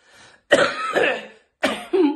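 A man coughing twice, two short loud bursts about a second apart.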